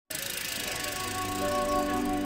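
Soft background music holding sustained notes, with a new note coming in partway through. Under it, the fast, even ticking of a road bike's freewheel as the bike is wheeled along without pedalling.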